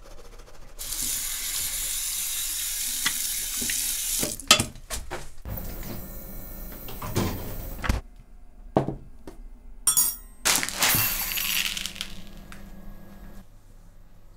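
Household sounds in quick succession: a few seconds of water running into a sink, then a ceramic bowl set down on a table with a sharp knock and light clinks of crockery, followed by another short rushing sound.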